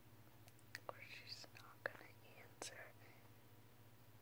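Faint whispering on a phone, with about four sharp clicks in the middle of it, over a low steady hum.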